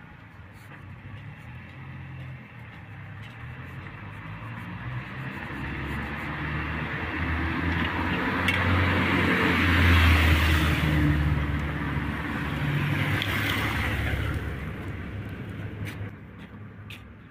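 A motor vehicle's engine coming closer, growing steadily louder until about ten seconds in, holding there for a few seconds, then fading away quickly near the end.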